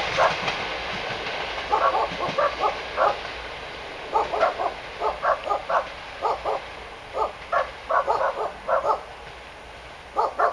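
A dog barking over and over in short runs of sharp barks, over the fading rumble of a train pulling away.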